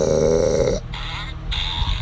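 A low, rasping vocal noise from a woman, lasting under a second, followed by quieter breathy sound.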